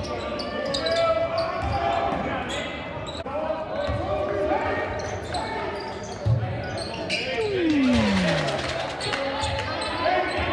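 Basketball game in a large gym: a ball thudding on the hardwood court a few times amid players' and spectators' shouts and chatter. About seven seconds in, a long sound slides down in pitch.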